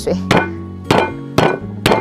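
Garlic cloves crushed under the flat of a cleaver, the blade struck with a fist against a wooden chopping board: four heavy thumps about two a second.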